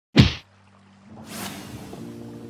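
An intro sound effect: a sharp hit just after the start, dying away within a quarter of a second, then a whoosh that swells up to about a second and a half in and fades as sustained musical notes begin.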